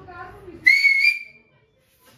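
A single short, loud whistle from a person, about half a second long, clear in tone and rising slightly in pitch.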